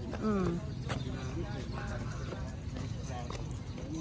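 A voice near the start, its pitch falling, then fainter voices and scattered footsteps on concrete over a steady outdoor hum.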